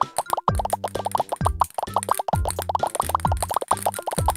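Cartoon plop sound effects in a quick, even run, several a second, as tiny balls pour onto a tray, over background children's music with a steady bass line.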